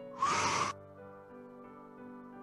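A person's breath taken hard through the mouth, about half a second long and starting a quarter of a second in, during a rotating stretch. Soft background music of held tones plays underneath.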